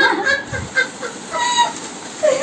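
A woman's high-pitched, squeaky giggling in short broken spurts, with a puff or two of breath as a foil balloon is blown up by mouth.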